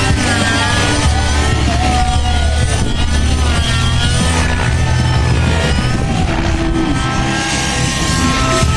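Radio-controlled model helicopter's engine and rotor running hard during aerobatics, the pitch rising and falling over and over as it flips and turns. Music plays underneath.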